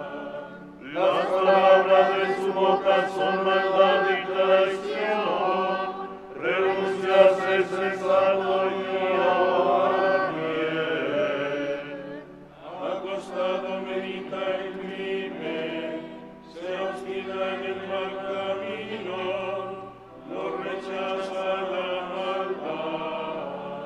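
Choir chanting liturgical prayer in unison: five phrases of a few seconds each, with short breaks between them.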